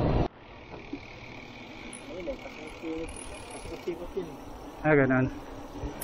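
Loud wind and road noise from a moving bicycle that cuts off abruptly just after the start, leaving quieter outdoor road ambience with faint distant voices and a steady high hum. A man says a word near the end.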